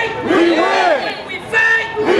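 A group of men chanting together with high, wavering, sliding voices in a Native-style chant, the same phrase repeating about every two seconds like a looped sample.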